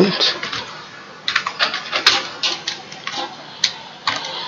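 Computer keyboard being typed on: an irregular run of about a dozen sharp key clicks starting about a second in.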